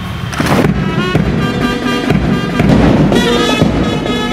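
A sharp crash about half a second in, then brass band music with held notes.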